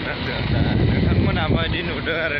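A person talking over the steady low rumble of a motorcycle being ridden.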